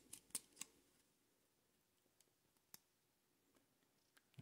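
A few small, sharp clicks in the first second, then near silence broken by two or three faint ticks: the metal parts of a guitar tremolo knocking together as its tremolo lock is fitted by hand.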